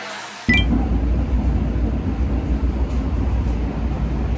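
Passenger train car running, heard from inside as a steady, loud low rumble that starts abruptly about half a second in, with a brief high ring at its start.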